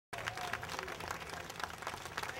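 An outdoor audience applauding: many hands clapping in a dense, uneven patter.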